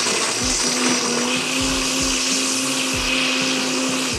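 Countertop blender motor running at speed on a jar of lemon and condensed-milk juice: a steady whir with a motor hum whose pitch steps up slightly in the first second and a half. It cuts off at the end.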